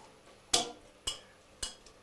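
A spoon knocking three times against a stainless steel stockpot, about half a second apart, as fish bones and trimmings are stirred while they brown in the pot.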